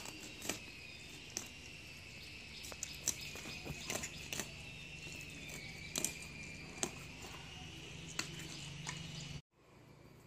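A steady, slightly wavering high insect drone, with scattered sharp clicks and crunches from a cleaver working through a large fish on a wooden block. The sound cuts off abruptly near the end.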